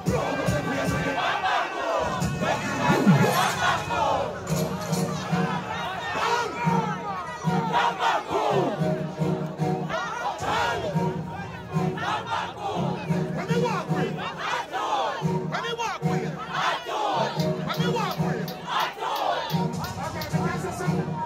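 Large crowd shouting and cheering at a dancehall stage show, many voices at once, over music with a pulsing bass.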